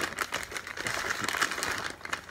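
Brown paper bag crinkling and rustling as a hand rummages inside it, a dense run of small crackles throughout.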